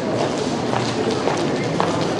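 Indistinct chatter of many people in a busy airport terminal hall, steady throughout.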